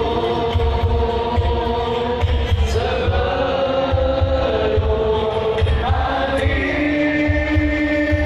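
Sholawat, Islamic devotional chanting in praise of the Prophet, sung with long gliding held notes through loudspeakers over a steady low drumbeat, with the crowd joining in.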